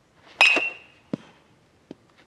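A baseball bat striking a pitched ball in a batting cage, a sharp crack with a ringing ping that fades within about half a second. Two shorter, softer knocks follow, about a second and a half second apart.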